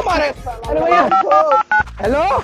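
Mobile phone keypad tones: about six quick two-tone beeps as a number is dialled, after a man's voice.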